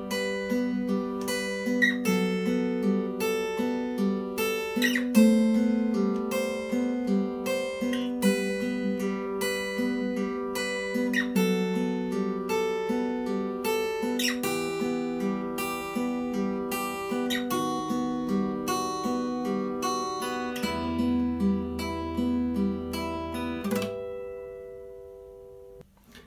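Acoustic guitar played note by note, an easy beginner's étude run through without a break. A low bass note sounds under the closing bars, and the final chord is left to ring and fade away about two seconds before the end.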